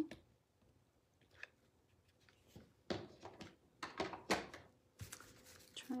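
Faint handling sounds of hot-gluing craft materials onto a wooden birdhouse. After about two seconds of near silence come a few soft clicks and rustles, the strongest about three to four and a half seconds in.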